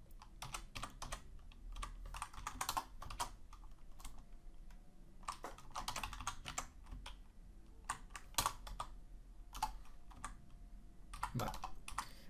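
Typing on a computer keyboard: keys clicking in several short bursts with brief pauses between.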